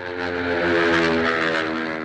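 Sustained electronic chord swelling in as the opening of a pop song, its held notes shifting about halfway through.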